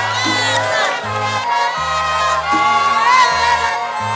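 A recorded birthday song backing track playing with a bass line of held low notes, while a crowd sings along and cheers.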